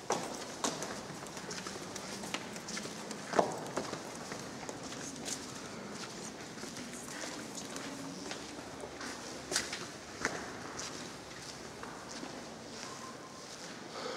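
Footsteps on a stone floor with irregular sharp clicks and knocks, the loudest about three and a half seconds in and another near ten seconds, over a steady background hush.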